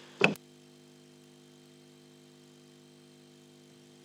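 One short, sharp sound about a quarter-second in, then a faint steady electrical hum from the microphone and sound system, several low tones held without change.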